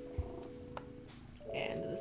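Domestic cat purring close to the microphone. Held musical tones run behind it until about halfway, and a short voice-like sound comes near the end.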